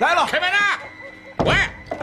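A single heavy wooden thunk about one and a half seconds in: the studio's wooden door being pulled open.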